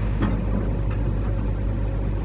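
Scania crane lorry's diesel engine running steadily with a low, even hum.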